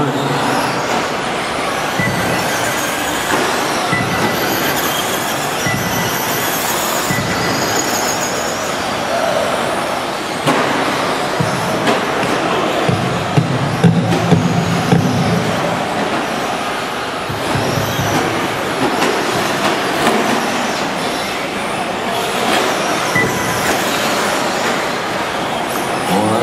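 Radio-controlled short-course trucks racing on a dirt track, their motors giving high-pitched whines that rise and fall as they speed up and slow down, over a steady din echoing in the hall.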